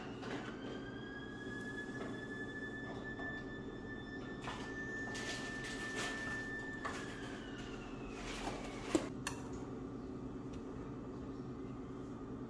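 A metal spoon clicking and scraping against a plastic tub and a small frying pan, with one sharp knock about nine seconds in, over a steady low hum. A thin whistling tone rises, holds for several seconds and falls away.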